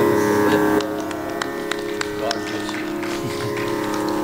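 Tanpura drone: a steady held chord of plucked-string tones that gets a little quieter after about a second. Several short soft clicks and knocks sound over it.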